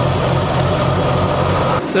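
Dodge B3 pickup's flathead straight-six idling steadily after years of sitting unused, freshly revived and running smoothly. The sound cuts off suddenly near the end.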